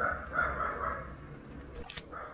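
Short animal calls, a few in the first second, over a low steady rumble.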